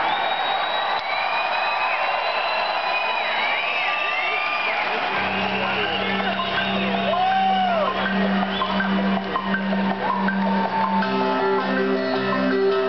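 Rock concert crowd whooping and whistling as the band starts a song over. About five seconds in, a steady pulsing low note from the band's instruments begins, and a higher pulsing note joins near the end.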